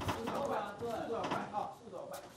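Speech: a man's voice talking, with the light background sound of a fight venue.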